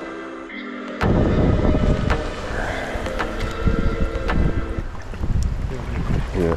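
Background music, then about a second in strong wind buffets the microphone with a loud, low rumble that takes over, the music carrying on faintly beneath it.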